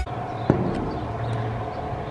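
Steady low outdoor background hum with a faint held tone and a single click about half a second in.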